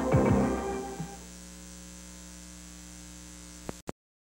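Closing credits music fades out about a second in, leaving a steady low electrical mains hum on the old videotape's sound track. Near the end the recording cuts off with two sharp clicks.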